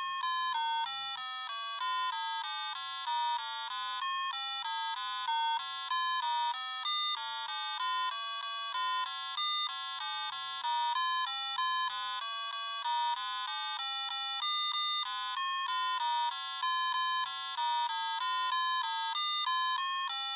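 Gakken GMC-4 4-bit microcomputer beeping a quick, unbroken run of short buzzy electronic tones through its small onboard speaker as it plays its random-number music program. The pitch jumps from note to note. It sounds like a scale at first, then more random, as each memory value is incremented by six to make pseudo-random notes.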